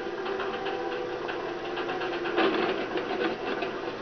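A light aircraft's piston engine running, a steady drone with fast rattling ticks over it that swells about two and a half seconds in, played back through a television's speaker.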